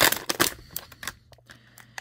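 Thin plastic water bottle crackling and crinkling as a serrated folding knife saws through it: a dense run of sharp clicks in the first half second, then scattered crackles.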